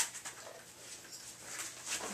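Dog moving about on foam floor mats: scattered light ticks and shuffling, with a sharp click at the very start.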